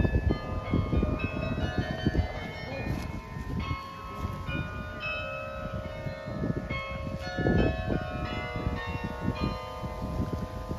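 Carillon being played: bronze tower bells struck one after another in a tune, their tones overlapping and ringing on, over an uneven low rumble.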